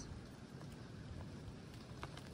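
Faint, steady background noise with no distinct events.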